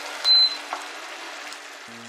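An induction cooker gives one short, high beep as it is switched off, while the reduced sauce in the stainless pot goes on sizzling faintly.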